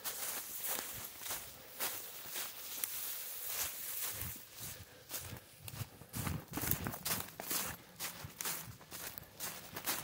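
Brisk footsteps crunching through thick, dry fallen leaves, about two steps a second, with a steady rustle of stirred leaf litter.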